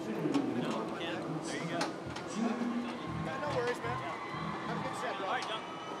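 Indistinct voices of several people talking, with music in the background and a few short knocks.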